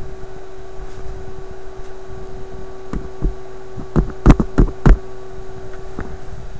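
A series of about six sharp knocks, bunched between about three and five seconds in, over a steady hum from the switched-on tube radio.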